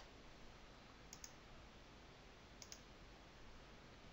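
Near silence broken by faint computer mouse clicks: a quick pair about a second in and another pair about a second and a half later.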